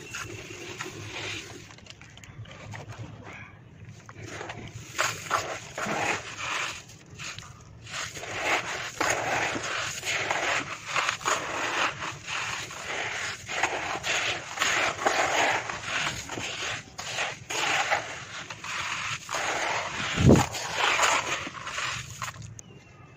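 Clumps of red dirt being crushed and crumbled by hand in a bowl, with gritty crunching and granules pouring and pattering down in uneven bursts. A dull thump near the end as a lump drops into the bowl.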